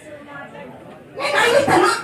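Speech only: voices talking, with a much louder burst of voice through the microphone from a little over a second in.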